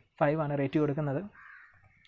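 A man's voice speaking for about a second, then a short pause with only faint background hiss.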